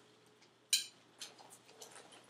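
Faint ticks and light clicks from a Quickie GPV manual wheelchair being turned in a circle on carpet while balanced in a wheelie, with one short, sharp, hissy burst about three-quarters of a second in.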